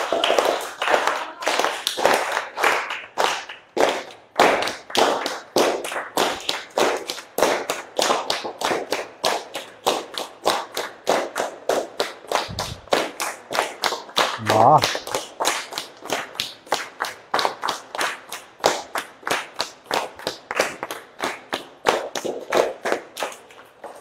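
A group of children clapping their hands together in a steady, fast rhythm, about three claps a second, keeping time for a Punjabi folk dance. A voice calls out briefly about halfway through.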